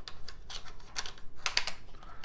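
Hard plastic clicks and taps from the battery-tray piece of a Traxxas Maxx RC truck chassis being snapped off and back into place, with a quick run of clicks about one and a half seconds in.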